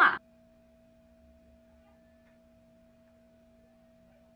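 The end of a spoken word right at the start, then near silence with a faint, steady hum holding one pitch.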